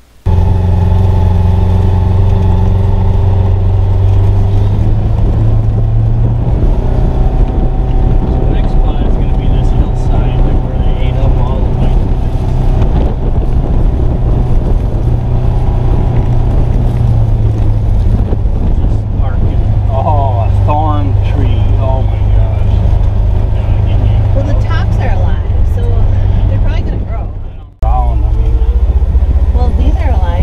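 Polaris Ranger XP 1000 Northstar UTV engine running while driving at low speed, heard from inside the closed cab as a loud, steady drone. There is a brief break in the sound near the end.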